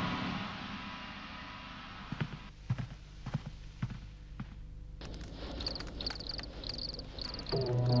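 Cartoon soundtrack: music fades out, followed by a few scattered soft knocks. From about halfway, a rhythmic high-pitched chirping repeats several times a second, and music comes back in near the end.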